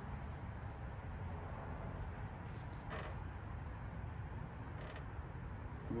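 Faint soft rubbing of a microfiber towel wiping waterless wash over a car's painted hood, with a couple of light ticks, over a steady low hum.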